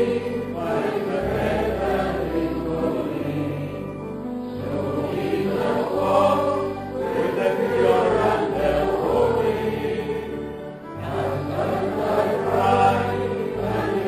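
A congregation singing a slow hymn together in long held phrases over sustained low accompaniment notes, pausing briefly between lines.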